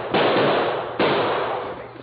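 Revolver gunshot sound effects: two sharp shots about a second apart, each trailing off in a long noisy decay. The recording is old and narrow-band.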